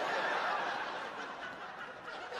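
Studio audience laughing in a large room after a punchline, the laughter dying away over two seconds.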